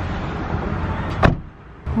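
A steady rustling noise, then one sharp knock a little over a second in, at an open car door.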